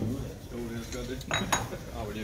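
Metal hand tools and workpieces clinking and clanking at a workbench vise, with a sharp ringing clank about one and a half seconds in. Voices murmur faintly in the room.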